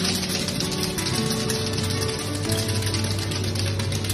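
Hard candy rods being chopped into small pieces with metal blades on a steel table: a fast, continuous run of crisp clicks, over background music.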